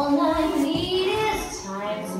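A woman singing a musical-theatre song over backing music.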